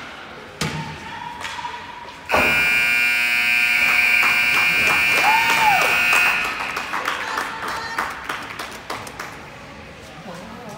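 An ice rink's game horn sounds for about four seconds, starting about two seconds in, then dies away in the arena's echo; it marks the end of the first period. A thump comes just before it.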